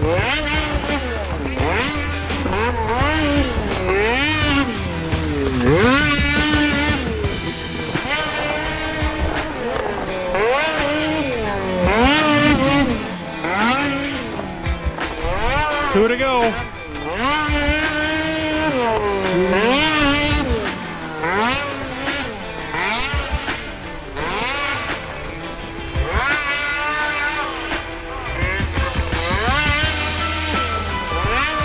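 Polaris snocross snowmobile's two-stroke engine revving up and down over and over as it is ridden around a race track, the pitch swelling and dropping about once a second.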